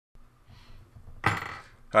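A single short metallic clink and clatter, a small metal tool handled at a jeweller's bench, a little over a second in, fading within half a second, over a faint low hum.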